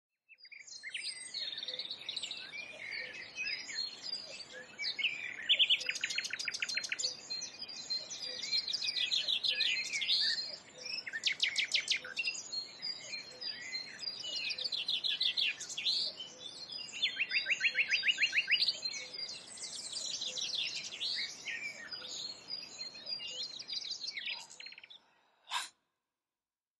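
Several birds singing and calling together, with chirps and repeated fast trills. The birdsong cuts off abruptly about a second before the end, followed by a single short click.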